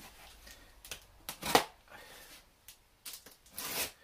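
Cardboard shipping box being handled and pulled open: a few sharp crackles and scrapes, the loudest about a second and a half in, and a longer rasping scrape near the end.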